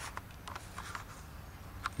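Quiet pause with faint steady background noise and a few soft clicks, one near the end.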